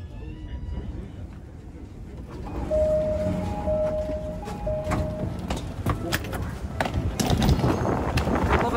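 An electronic chime sounds three steady, held tones about three seconds in. Sharp clicks follow, and the background grows busier near the end.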